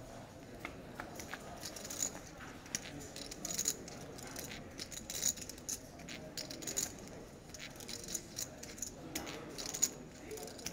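Poker chips clicking against each other in quick, irregular light clicks.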